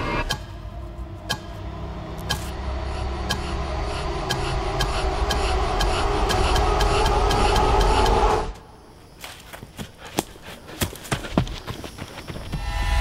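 Horror-trailer score: a low drone swells steadily under regular sharp ticks that quicken, then cuts off abruptly about eight and a half seconds in, leaving scattered knocks and clicks.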